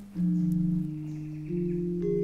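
Javanese gamelan gendèr played with two padded disc mallets: low, ringing notes struck two at a time that sustain and overlap. A new pair of notes comes in just after the start and another about halfway through.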